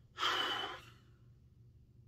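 A man's single sharp breath in through the nose, lasting under a second, as he sniffs perfume he has just sprayed.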